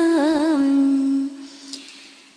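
A single voice chanting Vietnamese verse holds the last note of a line with a brief wavering ornament, then sustains it softly and trails off about halfway through into a pause.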